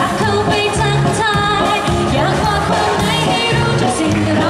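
Live acoustic pop song: vocals sung into microphones over an acoustic guitar.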